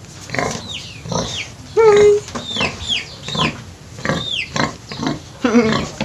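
A domestic pig grunting in short, repeated grunts, with a bird's high, falling chirps coming in between.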